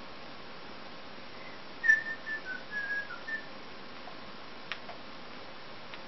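A person whistling a short tune of about six quick notes, which stops after a second and a half, then a single click a little over a second later.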